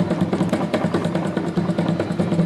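Loud, distorted rhythmic beating, about four beats a second, over a steady low drone, accompanying a group dance.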